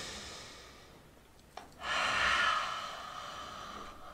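A woman's breathing during a Pilates reformer exercise. A soft breath fades away, there is a small click about one and a half seconds in, and then a long, strong breath of about a second and a half tapers off.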